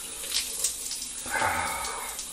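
Water running and splashing steadily while someone is washed. About one and a half seconds in there is a brief low murmur of a man's voice.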